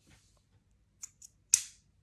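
A few short, sharp clicks of small plastic parts being handled, the loudest about a second and a half in.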